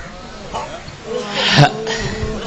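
Soft human voices in a pause between recited lines, with one louder voiced cry about one and a half seconds in.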